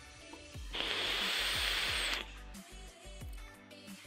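A draw on a box-mod e-cigarette: a steady hiss of air rushing through the atomizer as the coil fires, lasting about a second and a half and cutting off suddenly, over background music.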